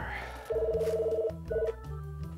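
Desk telephone ringing electronically with a pulsing two-tone ring: one ring of almost a second, then a short second burst, over background music.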